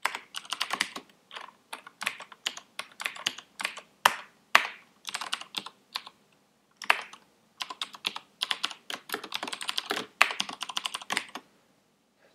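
Typing on a computer keyboard: quick runs of keystrokes in irregular bursts, broken by short pauses of under a second.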